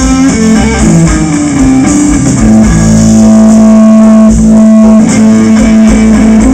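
Live blues band playing an instrumental passage on electric guitar, bass guitar and drums. The lead steps down through a run of notes, then holds one long note from just under halfway to near the end, over a steady drum beat.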